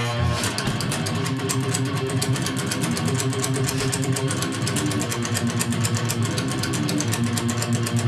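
Heavily distorted ESP EC1000 electric guitar with EMG active pickups playing a fast metal riff on open, unmuted strings, with rapid, even picking throughout.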